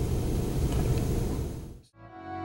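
Steady background room noise, an even hiss with no distinct events, fading out just before the end.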